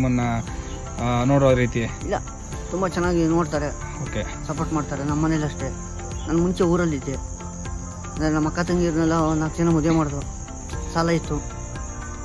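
A steady chorus of crickets chirping, heard under a man's speaking voice that comes and goes.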